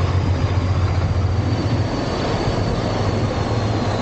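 Diesel engine of a heavy hook-lift truck running as it drives by at close range: a steady low rumble over street noise that eases a little about halfway through as the truck pulls away.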